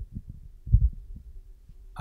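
A few soft, low thumps, the strongest about three-quarters of a second in, over a faint steady hum.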